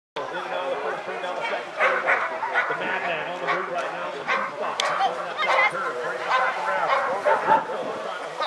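Dogs barking repeatedly amid people's voices.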